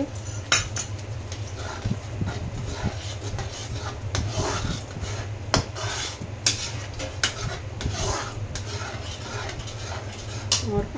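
A flat metal spatula stirring and scraping thick gravy around an aluminium kadhai, with irregular clinks and scrapes of metal on the pan. A steady low hum runs underneath.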